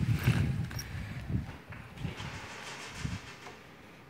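Loose wooden floor boards over a stairwell being lifted and shifted by hand: irregular knocks and scrapes of wood, loudest in the first half-second, with a few smaller knocks after, dying away toward the end.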